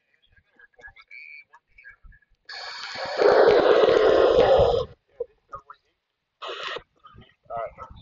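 Kenwood TM-V7 FM transceiver's speaker giving out about two seconds of loud, hissy, garbled reception that cuts off suddenly, like the squelch closing. A shorter burst of the same follows a couple of seconds later.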